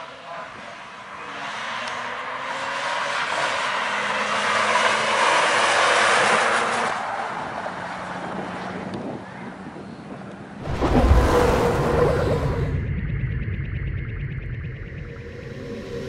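Saab 9-3 2.8T estate with its turbocharged V6 driving past, engine and tyre noise swelling and then fading over about ten seconds. About ten seconds in, loud music cuts in suddenly.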